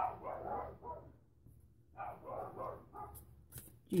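A dog barking in the background, in two short spells with a pause of about a second between them.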